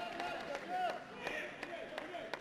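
Indoor mini-football match sound: players' shouts and calls echo in the hall, with a few sharp knocks from play on the pitch.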